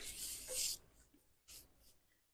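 Sheets of die-cut scrapbook paper sliding and rustling against each other for under a second, then stillness apart from a faint tick.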